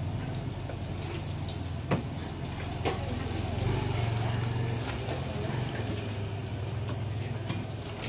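Steady low engine-like hum, as of an idling engine, with a few sharp knocks of a knife on a wooden cutting board around two and three seconds in.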